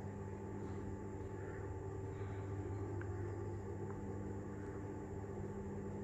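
Steady electric motor hum of a motorised fabric sunscreen running out over a glass veranda roof, with a couple of faint ticks a few seconds in.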